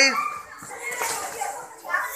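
Many children's voices talking and calling over one another. A loud shouted count trails off in the first moment.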